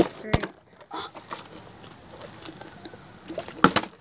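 A partly filled plastic water bottle knocking down onto wooden porch boards during bottle flipping: one sharp thud about a third of a second in, and a few more knocks near the end.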